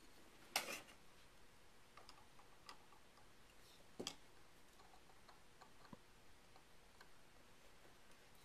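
Near silence broken by a few faint metal clicks a second or two apart: needle-nose pliers gripping and turning the small threaded guide rod in a Winchester Model 1907 rifle's receiver.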